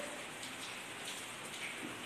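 A steady, even hiss of background noise with no distinct events.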